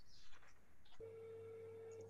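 A faint, perfectly steady tone, beginning abruptly about a second in and lasting just over a second before cutting off, heard over a low call line.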